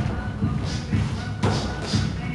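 Dull thuds from boxing sparring in a ring, a few of them, the loudest about a second and a half in, over background music.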